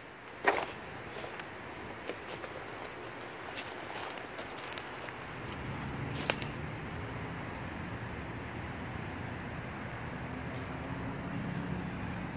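Quiet outdoor background with a few isolated clicks or snaps and, from about halfway through, a faint steady low hum.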